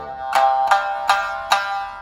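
A shamisen fitted with Indian-style chikari strings: one string is plucked four times, about 0.4 s apart, on the same pitch. Each note rings with bright overtones while the sawari, the buzzing bridge device, is being set.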